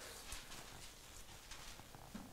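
Faint rustling and soft ticks of thin Bible pages being turned, over quiet room tone.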